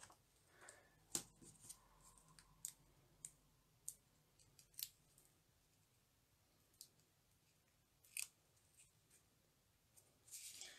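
Faint, scattered clicks and rustles of paper handling: small adhesive foam dots being peeled from their backing sheet and pressed onto a paper banner. About six short, sharp ticks, with quiet in between.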